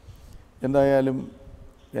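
A man's voice speaking one short phrase in the middle, with quiet pauses either side of it.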